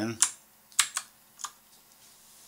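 Computer keyboard keys pressed four times: a click just after the start, two close together about a second in, and one more half a second later.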